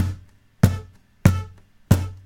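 Acoustic guitar played percussively: hand strikes on the guitar body with the strings muted by the left hand, giving a steady drum-like beat. There are four sharp hits, a little over half a second apart, each with a low boom that dies away quickly.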